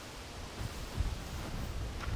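Wind buffeting the microphone with a rustling hiss and a few low bumps, the loudest about halfway through.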